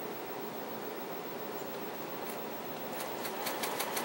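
Home sewing machine stitching a seam through cotton patches, with fast, even needle ticks that start up about three seconds in.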